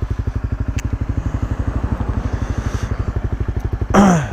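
Dual-sport motorcycle engine idling steadily, an even, rapid chugging of about seventeen beats a second.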